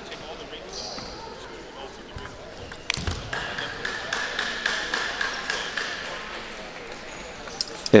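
Table tennis ball being played: a sharp hit about three seconds in, then a quick run of light clicks of the plastic ball on paddles, table and floor over the next few seconds, in a large hall.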